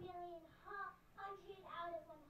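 A young girl singing in short phrases of held, sliding notes.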